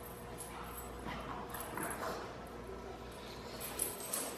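Pug sniffing and snuffling as she searches for a scent, a string of short, irregular breaths and faint taps over a steady low room hum.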